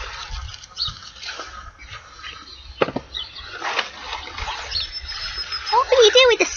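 Brussels sprouts being snapped off the stalk by hand: a few sharp snaps among rustling leaves, with a low wind rumble on the microphone.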